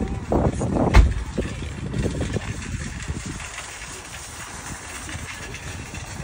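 Outdoor parking-lot ambience: a rushing noise with low rumbling bursts over the first two seconds and one sharp knock about a second in, then settling into a steadier, quieter hiss.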